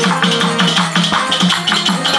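Instrumental folk devotional music: small hand cymbals clinking in a steady rhythm over a regular drum-like pulse of about four beats a second.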